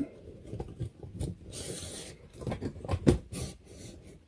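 Handling noise: irregular rubbing and scraping with a few sharp clicks and a brief hiss near the middle.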